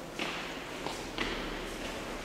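Three uneven footsteps on a hard floor, echoing in a large church interior.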